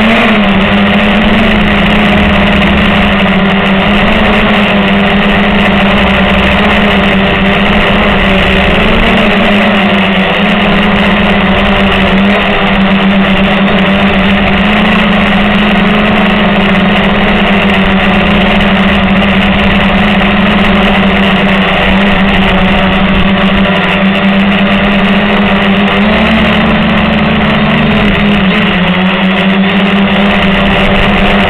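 Walkera Hoten-X quadcopter's motors and propellers running in flight, heard close up from a camera mounted on the aircraft: a loud steady buzz with a low hum whose pitch shifts briefly a few times.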